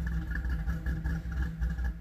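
A car engine idling steadily.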